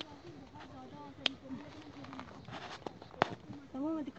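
Faint voices of people talking at a distance, with a couple of sharp clicks; a nearer voice starts just before the end.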